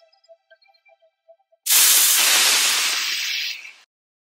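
The last notes of the music fade out faintly, then a loud hissing sound effect starts suddenly about one and a half seconds in, runs about two seconds, and cuts off.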